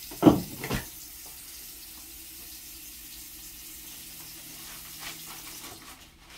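Bathroom sink faucet running steadily into the basin, shut off right at the end. Two short knocks in the first second as a hand reaches into a metal wastebasket.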